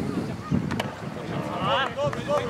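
Outdoor football match ambience: wind rumbling on the microphone, a few sharp knocks about half a second in, and a voice calling out across the pitch near the end.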